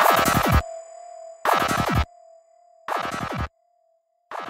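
Dark psytrance electronic music winding down at the end of a track. A dense noisy synth burst with falling pitch sweeps repeats about every one and a half seconds, each repeat quieter, like a fading echo. A thin held tone underneath fades away.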